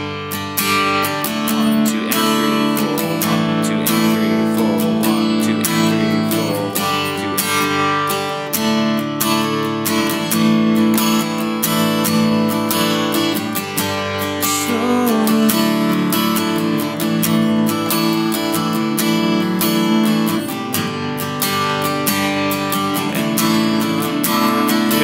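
Steel-string acoustic guitar strummed with steady downstrokes, looping G, D and A chords with accents on beats one and three.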